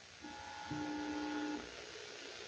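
Faint hiss with two faint held tones, one higher and one lower, that stop together about a second and a half in.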